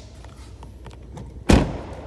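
The liftgate of a 2022 Chevrolet Trailblazer is pulled down by hand and shuts with one loud thud about a second and a half in.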